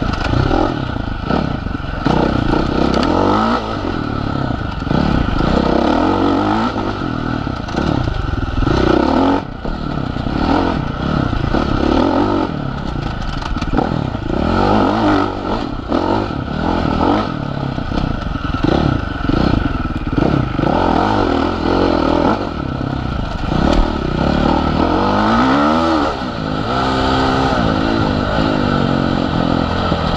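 Husqvarna FC450's single-cylinder four-stroke engine being ridden hard on a woods trail, revving up and falling back over and over, with rattling knocks from the bike over the bumps.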